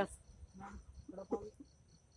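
Night insects trilling faintly: a steady high-pitched trill with a rapid pulsing chirp running beneath it.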